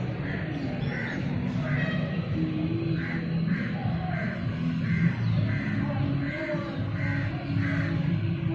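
Music with sustained melody notes, and crows cawing over it in a steady series of about two caws a second.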